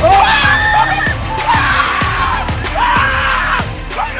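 Background music with a steady beat, over which high-pitched voices scream three long cries in excitement.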